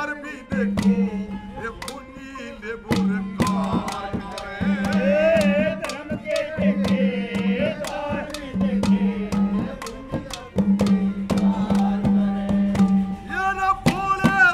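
Live folk ragini: a man's voice sings a wavering melody over sharp hand-drum strokes. A low note is held in stretches of about a second, over and over.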